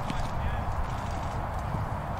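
Outdoor ambience of footballers on a training pitch: indistinct distant voices over a steady low rumble and hiss.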